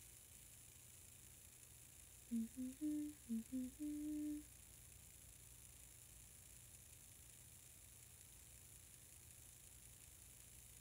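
A woman humming a short tune of about six notes, starting a couple of seconds in, the last note held a little longer.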